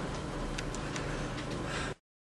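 Quiet room tone with a low hum and a few faint, light clicks, cutting off abruptly to silence just before the end.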